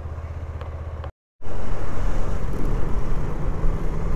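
Motorcycle engine running at low revs with a steady low hum. After a sudden cut to silence just over a second in, it comes back louder, with engine and wind noise as the bike rides on.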